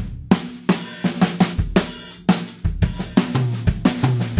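Drum kit playing a short, busy beat of snare, bass drum and cymbal hits, about three to four strokes a second, with cymbal wash ringing between them. A low tone sounds briefly near the end.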